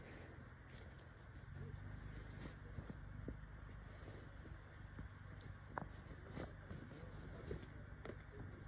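Faint outdoor background picked up by a phone at night: a steady low rumble with a few faint clicks.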